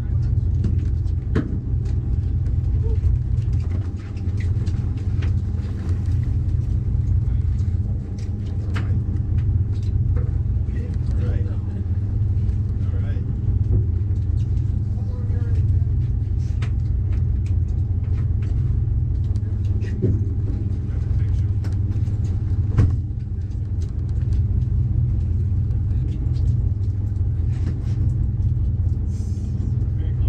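A fishing boat's engine running with a steady low rumble and hum.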